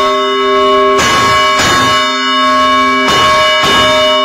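Large polished cast-metal bell being rung, struck about five times in pairs, each pair of strikes about a half-second apart, its several steady ringing tones sustained between strikes.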